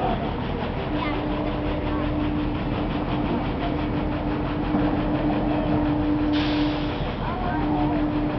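Top Spin amusement ride running, its machinery giving a steady hum that drops out now and then, with riders' voices over it. A brief hiss starts about six seconds in and cuts off before seven.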